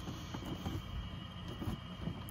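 Faint handling of a cardboard toy box with a clear plastic window: a few light clicks over a steady low rumble and a thin, steady high whine.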